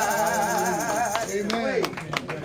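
A man singing the last held note of a gospel song into a microphone, wavering with vibrato, then sliding down in pitch and stopping shortly before the two-second mark, with a couple of sharp taps under it.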